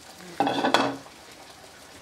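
Kitchen cookware clattering briefly, about half a second in, then only a faint background.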